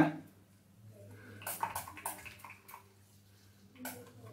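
Faint short hisses and crackles as a hair system's taped base is sprayed with lace-release solvent and peeled back off the scalp, with a sharp click near the end.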